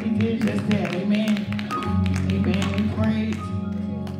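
Church service music: a keyboard or organ holding steady low chords, with a woman's voice at a microphone over it and quick sharp taps running through.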